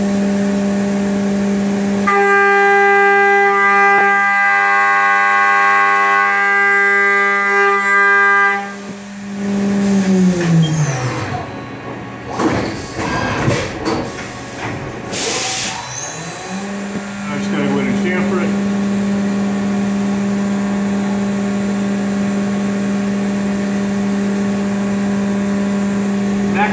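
Haas VF-2SS CNC mill spindle running a Walter 1-inch cutter at 12,000 RPM, a steady whine; early on a cluster of ringing tones sits on top while it cuts, the vibration from the cutter sticking out nearly four inches from its holder. About nine seconds in the spindle winds down, with knocks and a short hiss, then spins back up a few seconds later and runs steady.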